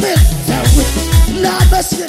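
Live upbeat gospel worship music: a deep kick drum that drops in pitch lands about twice a second, under a keyboard melody and held chords.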